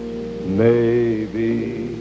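Soft, held chords from the accompanying band, then a male crooner starts singing a slow ballad about half a second in, holding long notes.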